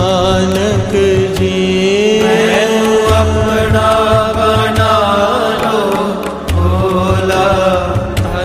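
Devotional music: a mantra chanted to a slow melody over a steady drone, with a low drum beat recurring underneath.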